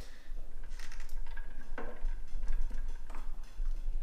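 Steel screwdrivers clicking and scraping against the fuel gauge and the plastic fuel tank as they pry up a float-type fuel gauge that is pressed snugly into the tank: a handful of sharp clicks over a low steady hum.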